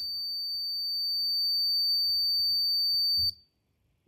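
Small electronic buzzer on an Arduino Uno circuit sounding one steady high-pitched tone, set off because the DHT11 sensor's reading is over the programmed threshold. It cuts off suddenly near the end.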